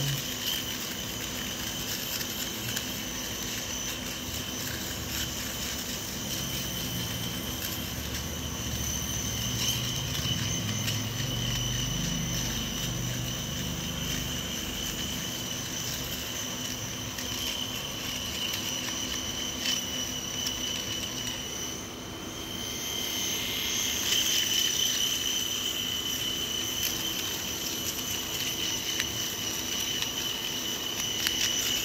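Electric shaver running steadily as it is moved over a moustache, a continuous motor buzz with a high whine. It dips briefly about three quarters of the way through and comes back a little louder.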